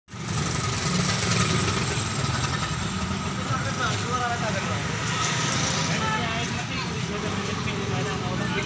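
Steady street noise with an engine running, and men's voices talking from about halfway through.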